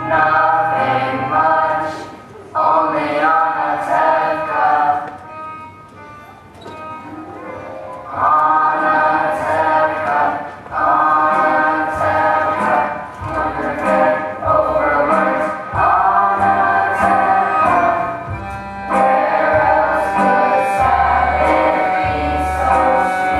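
A cast of young singers singing together as a chorus, in sung phrases a few seconds long with short breaks between them and a softer passage about five to eight seconds in.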